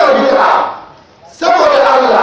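A man shouting emphatically into a microphone, in two loud bursts about a second and a half apart.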